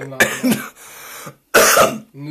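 A man coughing: a short cough early on, a breathy exhale, then a louder, harsh cough about one and a half seconds in.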